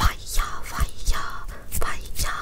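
Close-miked whispering in breathy, broken stretches, with three soft low thumps from hand movements near the microphone: one at the start, one about halfway through and one near the end.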